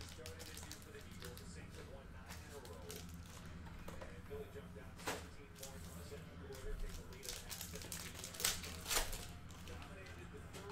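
A trading-card pack wrapper being handled and torn open: scattered crinkles and rustles, the loudest near the end, over a steady low hum.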